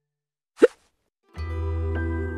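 A single short cartoon pop sound effect, rising quickly in pitch, about half a second in. Music with plucked guitar and a steady bass starts about a second later.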